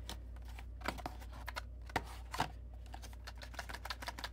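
Light clicks and taps of a cardboard packaging insert being handled and pried at, scattered at first and coming quicker near the end, over a steady low hum.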